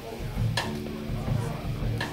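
Live indie rock band playing, heard through the room: a low drum-and-bass pulse about three times a second, a sharp hit about half a second in, and a guitar chord that rings on after it.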